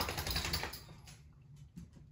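Slurping a thick, chunky liquid up through a drinking straw: a rapid, crackly sucking for most of the first second, then fainter.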